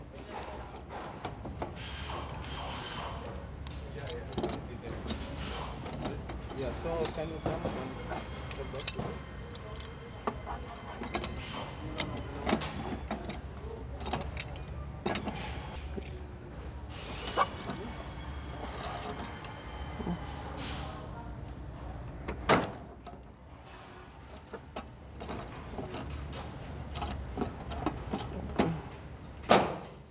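Metal operating lever working the spring-charging mechanism of a ring main unit's vacuum circuit breaker cell: repeated clicks and clanks as the closing spring is charged, over a steady low hum. A sharp loud clack comes about two-thirds through and another just before the end, the last as the charged spring is released and the breaker closes to energize the cell.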